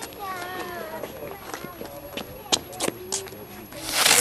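Voices talking in the background with a few sharp clicks in the middle, then right at the end a ground firework catches and starts spraying sparks with a loud hiss.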